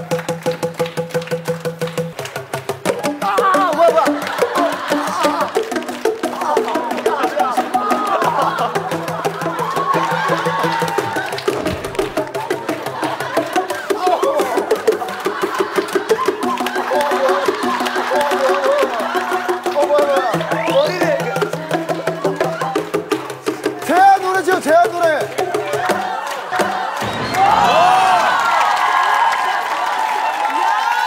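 Tuned plastic tubes, cut plastic cylinders each pitched to one note, struck quickly in rhythm to play a melody over a backing track with long held bass notes.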